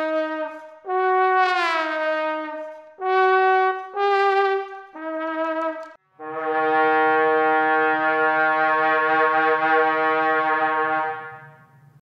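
Hand-blown, lamp-worked glass trombone playing a short phrase of held notes, the first two sliding down in pitch. It ends on one long note of about five seconds with a rough low buzz underneath, which fades out near the end.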